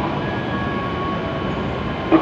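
E7 series Shinkansen pulling slowly into the platform: steady running noise from its wheels and running gear, with a few faint steady tones above it.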